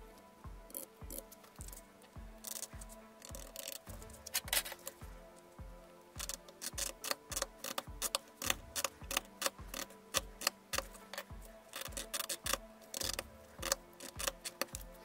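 A steel scribe scoring a thin plastic strip along a metal straightedge, in irregular runs of short scraping strokes, to weaken it for snapping. Background music with a steady low beat runs underneath.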